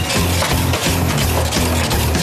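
Loud background music with a heavy, repeating bass line.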